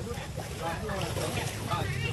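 Indistinct voices of children and an adult talking, over a steady low rumble of wind on the microphone.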